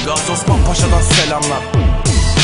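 Hip hop beat with sliding bass notes that fall in pitch and sharp drum hits, with a rapping voice over it.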